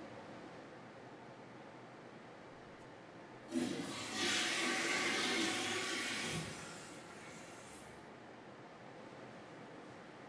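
Toilet flushing in a public washroom stall: a sudden rush of water about three and a half seconds in, loudest for about two seconds, then draining away.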